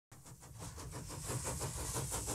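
Steam engine sound effect: a fast, even rhythm of puffs over a steady hiss, fading in from silence and growing louder.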